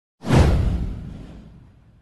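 A whoosh sound effect with a deep low boom under it. It starts about a fifth of a second in, swells quickly while sweeping downward in pitch, and fades away over about a second and a half.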